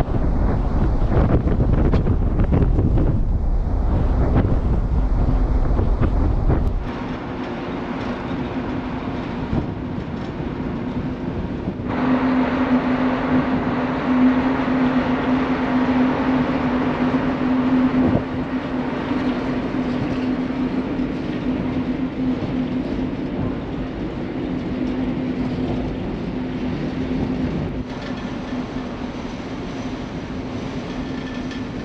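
Steady drone of a large car ferry's engines heard from its open deck, with wind rumbling on the microphone for the first several seconds. From about twelve seconds in a steady low hum stands out over the drone.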